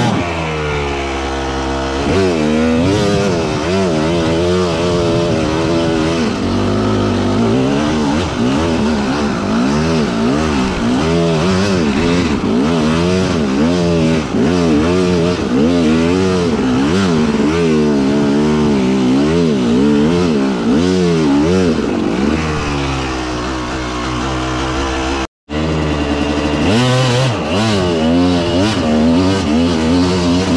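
Enduro motorcycle engine revving up and down over and over as the throttle is worked. The sound cuts out for a split second late on, then the revving resumes.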